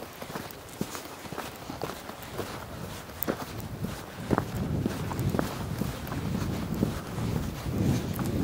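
Footsteps of a person walking along a sandy forest path, a series of irregular soft steps.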